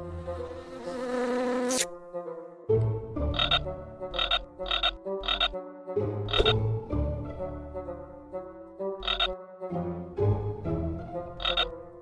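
Cartoon frog croaks: about seven separate deep croaks at uneven spacing, after a hissing rush in the first two seconds.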